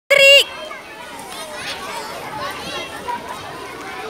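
A crowd of children chattering and calling, many voices overlapping. A short, loud, high-pitched shout comes right at the start and is the loudest sound.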